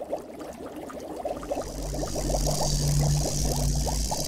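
Intro sound effect: a dense patter of small crackles swelling up from silence, joined partway through by a steady low hum and a rising hiss, building toward the theme music.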